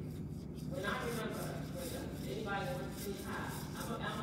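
Distant, indistinct speech in a large hall, over a steady low hum.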